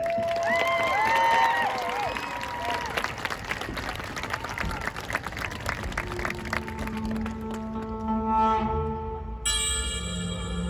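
A stadium crowd applauding and cheering, with whistles and shouts. About six seconds in, the marching band's opening music starts with long held notes, and a brighter, fuller chord joins near the end.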